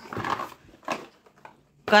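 Cardboard toy boxes being handled: a brief scrape of cardboard as a boxed jigsaw puzzle is lifted out of a cardboard carton, then a single knock about a second in.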